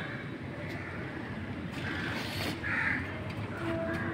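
A crow cawing twice in the second half, over a steady low background hum.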